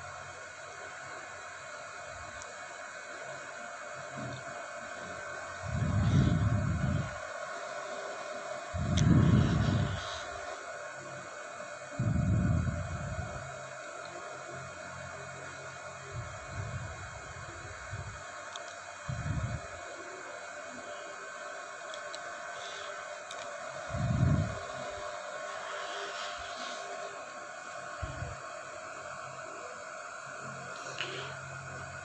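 Dough being kneaded by hand in a steel bowl: a dull, low thud every few seconds as the dough is pressed and pushed, about seven in all, over a steady background hum.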